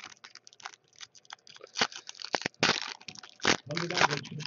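Foil wrapper of an O-Pee-Chee Platinum hockey card pack crinkling and tearing as it is ripped open by hand: a dense run of sharp crackles, loudest just before three seconds in and again about half a second later.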